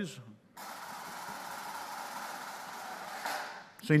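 A drum roll: a steady rattling roll that starts about half a second in and runs for about three seconds, with a brighter swell near the end, breaking off as a man's voice resumes.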